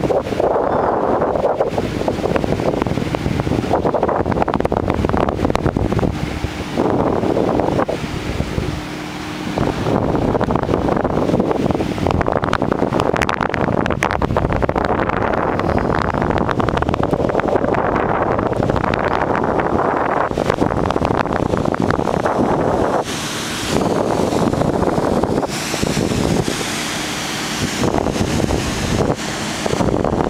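Wind buffeting the microphone of a camera carried aloft under a parasail: a loud, gusty rushing that eases in brief lulls about eight seconds in and a few times near the end.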